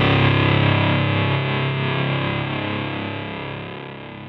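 The last chord of a heavy stoner-rock song, struck on fuzz-distorted electric guitars, ringing out and slowly dying away as the song ends.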